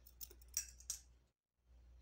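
Small scissors snipping polypropylene crochet yarn: a few faint, quick clicks in the first second.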